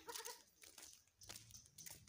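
Near silence, broken at the very start by one short pitched vocal sound, followed by a few faint clicks.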